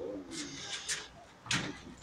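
A bird's low cooing call, falling in pitch, in the first half second, and a sharp click about one and a half seconds in.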